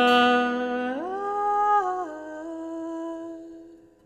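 A male classical voice singing long held notes with little or no accompaniment. It holds one note, rises about a second in, then settles on a slightly lower note that fades out near the end.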